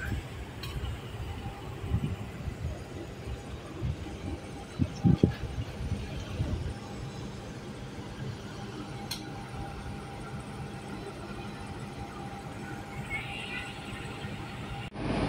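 Steady low hum of a diesel locomotive idling at the head of a standing train, with a faint steady whine over it. A couple of low thumps come about two and five seconds in.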